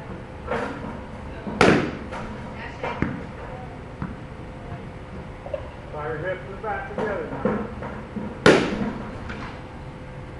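Two sharp cracks of a bat hitting a pitched ball during batting practice, about seven seconds apart, the first about a second and a half in and the second near the end, each with a short ringing tail.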